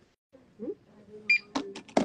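Point-of-sale till giving a short electronic beep, then a quick run of sharp clicks as it prints a receipt.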